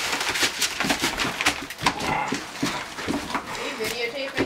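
Great Dane puppies romping and scuffling, with a busy run of irregular scratches and rustles as they move over newspaper on the floor, and a short whine about halfway through.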